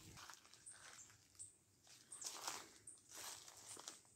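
Faint footsteps on grass and dry leaves: a handful of soft, irregular steps over near silence.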